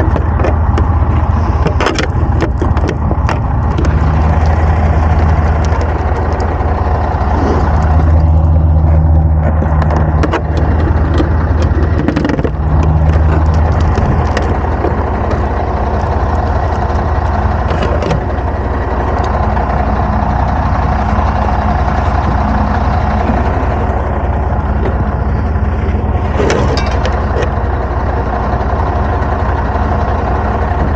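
Truck diesel engine idling steadily, swelling louder three times in the first half, with scattered crunching footsteps in snow.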